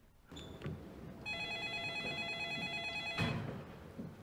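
A telephone ringing: a short beep, then one steady multi-tone ring about two seconds long.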